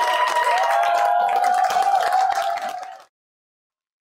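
Audience applauding, with a few wavering held tones over the clapping. It fades out and stops about three seconds in.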